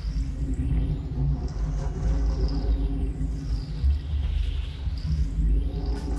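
Dramatic background score: a deep, steady rumbling drone with a slow sweeping swish above it that rises and falls.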